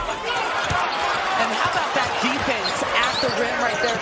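Basketball game sound on a hardwood court: a ball dribbled in repeated strikes and sneakers squeaking, over a steady murmur of arena crowd voices.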